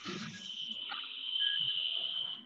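A steady high-pitched whine over a hiss, growing a little louder toward the end.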